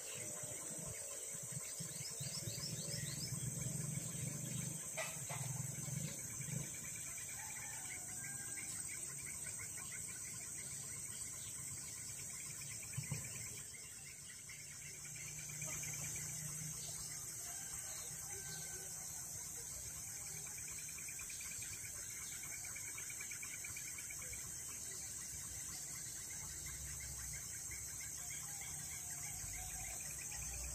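Steady, high-pitched chorus of forest insects, with faint bird calls now and then.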